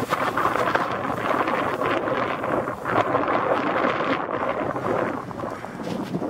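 A sled sliding down a slope over frosty grass and thin snow: a steady, rough scraping and crackling, with wind buffeting the microphone.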